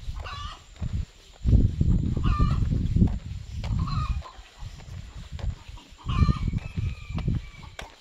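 A domestic rooster crowing, with shorter calls in the first half and one long crow holding a steady note near the end. Irregular bursts of low rumble run underneath.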